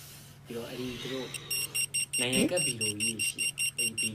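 Electronic alarm beeping: a fast, evenly spaced run of short high beeps that starts about a second and a half in, with a man's voice over it.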